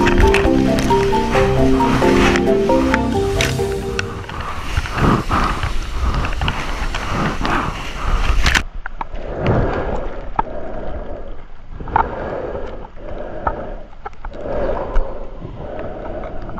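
Music with a melody of held notes for about four seconds, then water rushing and splashing around a surfboard riding waves, in surges that swell and fade. About halfway through, the sound turns abruptly duller.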